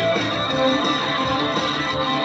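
Yamaha electric guitar being strummed in a continuous run of chords.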